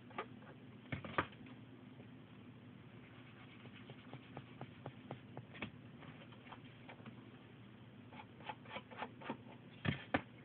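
Light clicks and taps of a wood-mounted rubber stamp and plastic ink pad being handled and set down on a desk, with two sharper knocks about a second in and a cluster of quick taps ending in a louder knock near the end. A faint steady hum sits underneath.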